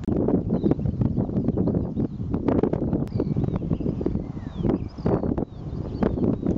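Footsteps walking across grass, an irregular run of rustles and soft thuds, with a few faint bird chirps in the middle.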